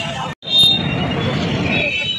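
Street traffic noise mixed with the babble of a crowd of voices, cut off for an instant a third of a second in by an edit.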